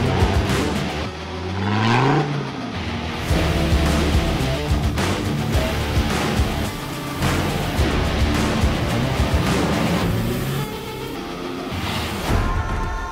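Background music with a steady beat, mixed with off-road 4x4 engines revving as they drive through deep mud. One engine rises sharply in pitch about a second in.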